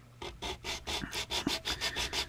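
180-grit sandpaper on a wooden sanding block rubbed back and forth over the side of a plastic model car body, sanding off the molded trim. It starts a moment in, in quick, even strokes, about six a second.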